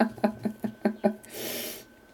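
A woman laughing in a quick run of short 'ha' sounds, about five a second, ending in a breathy exhale about a second and a half in.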